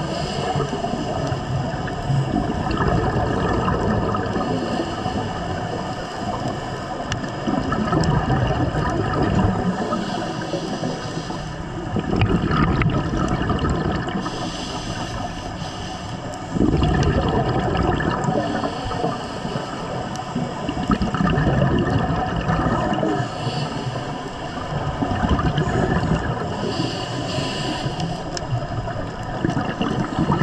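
Scuba divers' regulator breathing and exhaled air bubbles, heard underwater through the camera housing: a continuous bubbling rush that swells every four to five seconds with each exhalation.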